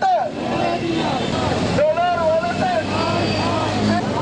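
A crowd of protesters shouting slogans in drawn-out, raised voices, with a short break about two seconds in. A vehicle engine hums low underneath near the end.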